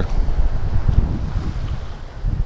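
Wind buffeting the camera's microphone: an uneven low rumble that swells and drops.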